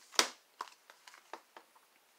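Tarot cards being drawn from a deck and handled: one sharp snap near the start, then a few light clicks and rustles.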